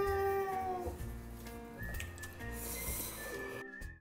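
Outro background music: a steady low beat under long held high notes, the first sliding slightly downward and breaking off about a second in, with the track cutting off just before the end.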